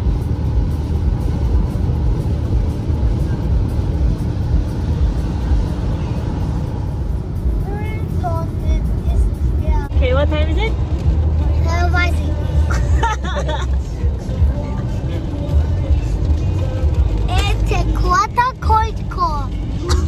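Car cabin noise on a wet motorway: a steady hiss of rain and tyre spray over a low road and engine rumble. From about seven seconds in, voices and music come in over the rumble.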